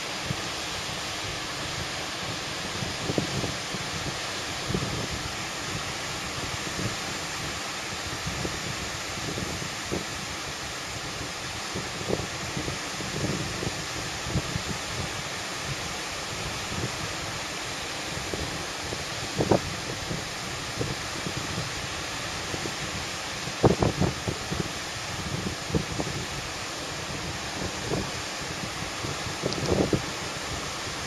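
Fairly strong onshore wind buffeting the microphone over the steady wash of small surf breaking on a sandy beach, with a few sharper gusts.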